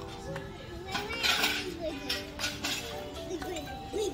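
Background music with a steady held melody, under the indistinct voices of other people, with a few light clicks and a short, louder burst of noise about a second in.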